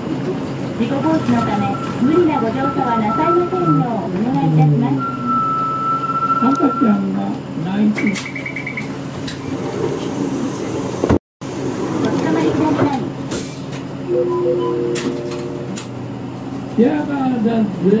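Voices inside a moving city bus over the low running noise of the bus. Two steady electronic tones are heard early on, then a short fast beeping about eight seconds in. The sound cuts out completely for a moment just past eleven seconds.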